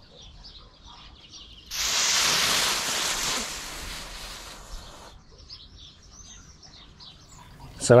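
Three clip-on fireworks igniters firing together off a single cue and lighting short pieces of green fuse: a sudden hissing fizz about two seconds in that fades and stops about three seconds later. All three fire without a problem. Birds chirp in the background.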